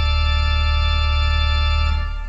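Church organ holding a loud, steady full chord over a deep pedal bass note, released at the very end.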